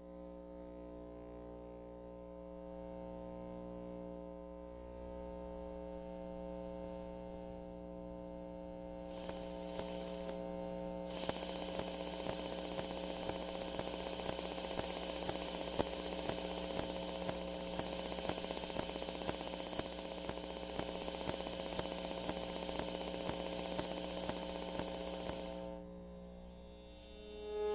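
Electronic noise drone: a cluster of steady humming tones, joined about eleven seconds in by a dense crackling static hiss that cuts off suddenly near the end.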